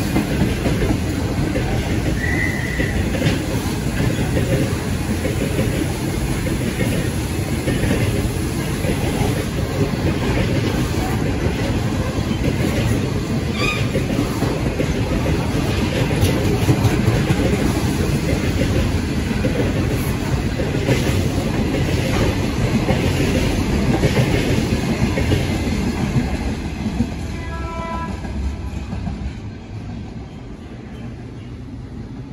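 Freight train of hopper wagons rolling past, with a steady rumble and the wheels clattering over the rail joints, with a few brief high squeals. It fades near the end as the last wagons pass.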